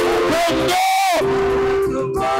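Church choir singing a worship song, with long held notes and one note bending about a second in.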